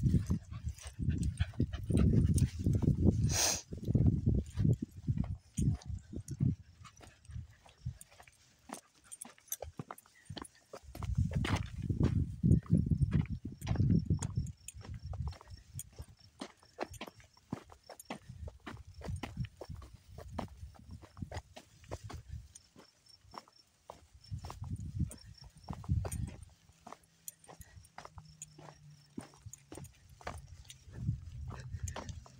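Walking footsteps on a dry, cracked dirt track, with steady small clicks and crunches throughout, and bouts of low rumble on the microphone now and then.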